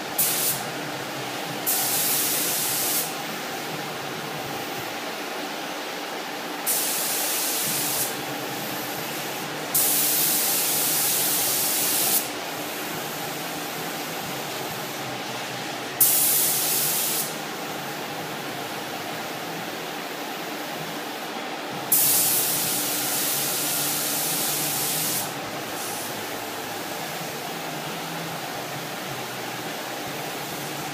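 Harbor Freight touch-up spray gun hissing as it sprays base coat in six separate passes, each half a second to three seconds long, the last the longest, over a steady hum.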